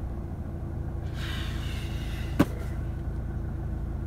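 Car engine idling, heard from inside the cabin as a steady low hum, with one sharp click a little past halfway.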